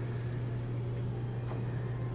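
A steady low hum throughout, with two faint clicks about a second and a second and a half in as a key card is worked in a hotel room door lock.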